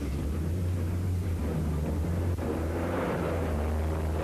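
Rally car engine running at speed on a loose stage: a steady low drone, with hissy tyre and surface noise swelling in the middle and easing off toward the end.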